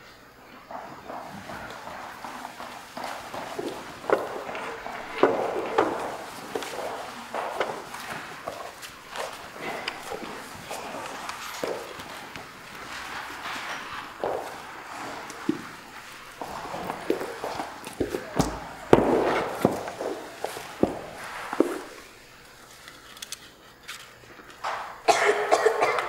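Footsteps and scattered knocks and bumps on a wooden stage floor as a set is changed in the dark, with shuffling throughout and a heavier thud about 19 seconds in.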